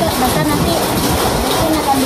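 A woman speaking, between phrases of an interview, over a steady background rush of outdoor noise.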